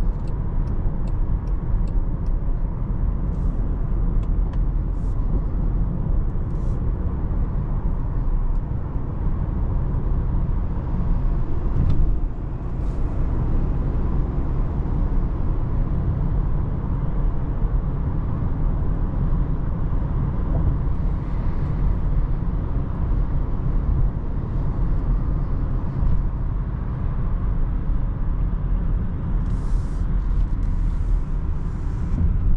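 Steady in-cabin noise of a 2024 Range Rover Evoque with the 2.0-litre four-cylinder petrol engine, cruising at motorway speed: an even low road-and-engine rumble heard from inside the car.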